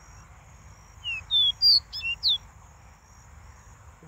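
A caged caboclinho, a small Brazilian seedeater, singing one short phrase of about half a dozen high whistled notes that slide up or down, starting about a second in and lasting about a second and a half.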